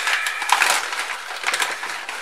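Brown paper bag crinkling and wood shavings rustling as a hand rummages inside it, a dense irregular crackle throughout.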